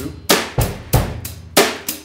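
A drum kit playing a basic beat: steady eighth notes on the hi-hat with bass drum and snare drum strokes, about three strokes a second.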